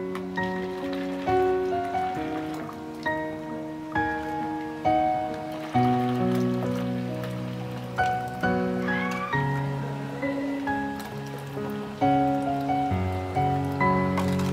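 Slow background piano music: single notes and chords struck about once or twice a second, each ringing on and fading.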